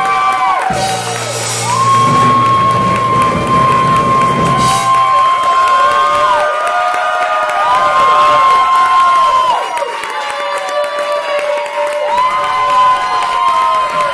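A singer holds a final high note over piano chords for the first few seconds. The audience then cheers and whoops, with many long rising-and-falling calls going on to the end.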